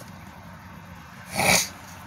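A man's single short, forceful burst of breath through the nose or throat about a second and a half in, over a faint steady hum.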